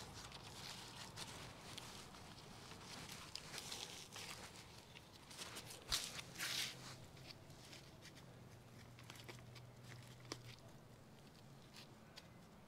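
Faint rustling and crackling of potting mix being handled and pressed into a small plastic pot by gloved hands, with a sharp click about six seconds in followed by a brief hiss.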